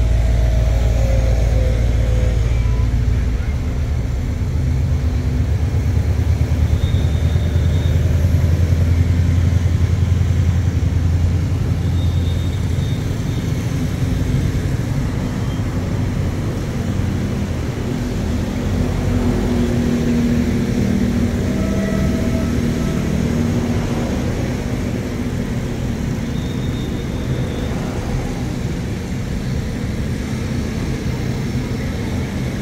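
A passenger train of stainless-steel coaches rolling along beside the platform. It makes a steady low rumble that is heaviest in the first dozen seconds and then eases a little.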